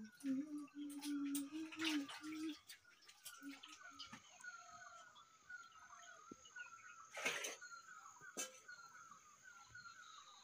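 Faint birdsong: a short falling call repeated about two to three times a second, with a thin steady high tone behind it from about three seconds in and two sharp clicks near the end.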